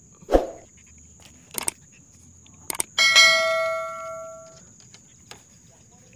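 A bell chime sound effect rings out about three seconds in and fades over roughly a second and a half; it comes from a subscribe-button animation. Before it there is a single thump and a couple of light clicks.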